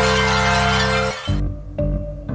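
Intro theme music: a dense, noisy sustained chord that cuts off suddenly about a second in, followed by low bass notes and short hits.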